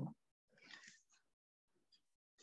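Near silence: room tone, with a faint brief rustle about half a second in.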